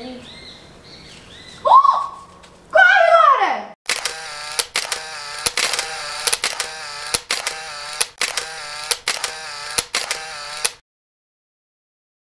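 A high voice calls out twice, first rising, then falling. Then an edited soundtrack plays: a pitched vocal clip chopped into short repeated pieces about twice a second, with a click at each cut. It cuts off suddenly near the end.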